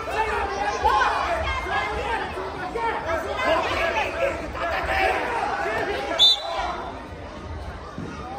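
Many overlapping voices calling out in a large, echoing sports hall. A short, sharp high-pitched sound cuts through about six seconds in, after which the voices are quieter.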